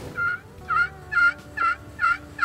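A pot-style friction turkey call worked with a wooden striker, giving a run of short yelps at about two a second. It is imitating a hen turkey to draw a gobble from a tom.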